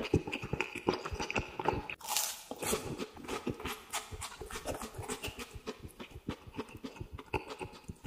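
A person chewing a mouthful of food close to the microphone with the mouth closed: a quick, irregular run of wet clicking chewing sounds, several a second, with a louder crunchy burst about two seconds in.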